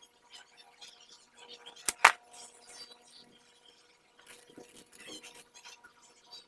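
Electric winch power cables being handled: light rustling of the coiled cable and small clicks of its metal terminals against the control box, with two sharp clicks about two seconds in, the second the loudest.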